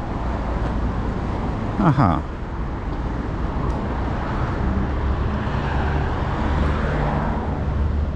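Steady vehicle noise on a wet road: a low engine hum under a continuous rushing noise that swells briefly about six to seven seconds in.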